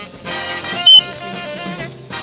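Swing jazz recording with saxophone and brass playing. A short, very loud high-pitched beep cuts in just before a second in.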